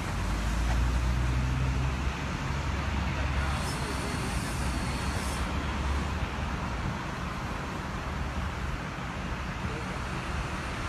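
Road traffic noise with a vehicle engine running close by. Its low rumble is strongest over the first few seconds and eases after about six seconds. A short high hiss comes about four seconds in.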